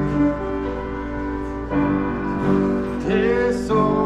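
Instrumental introduction to a congregational hymn: held chords that change every half second or so. A voice begins to come in about three seconds in.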